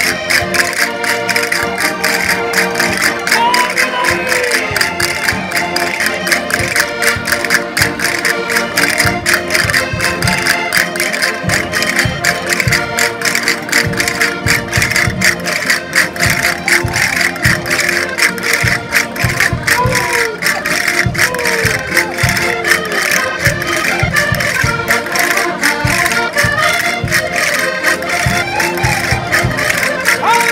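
Concertina playing a lively vira dance tune with a steady beat, under the voices of a dancing crowd calling out.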